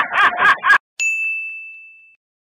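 A man laughing loudly in rapid bursts, cut off abruptly less than a second in; after a brief silence, a single bright ding sound effect strikes and rings on one high tone, fading away over about a second.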